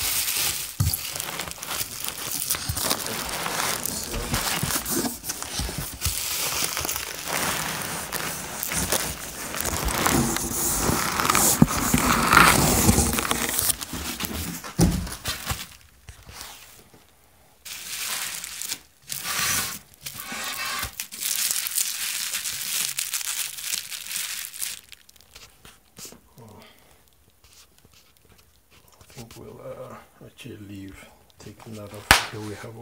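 Bubble wrap and plastic packing rustling and crinkling as it is handled. The sound is dense for about the first fifteen seconds, then comes in shorter bursts and grows quieter near the end.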